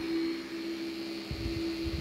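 Spray-tan machine's turbine blower running, a steady hum under a rushing hiss of air.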